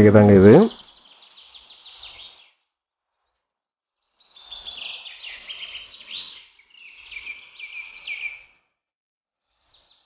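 Birds chirping in several bursts of rapid, high chatter, separated by short silent gaps.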